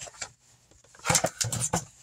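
Paper and packaging rustling with a few short clicks as the contents of a boxed craft kit are handled, starting about a second in after a brief quiet.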